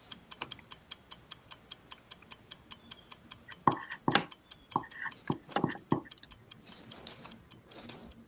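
A countdown clock ticking evenly, several ticks a second, timing a quiz answer period. A few brief faint sounds come about halfway through.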